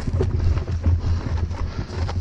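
Wind and movement rumbling on a helmet-mounted camera's microphone as the wearer moves on foot, with scattered short clicks and knocks of footsteps and gear.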